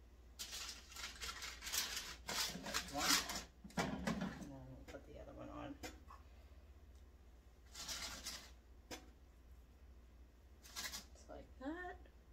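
Irregular rustling and crinkling of parchment paper and handling noise as pastry hand pies are set on the paper in an air fryer basket, in several short bursts. A brief murmured voice is heard near the end.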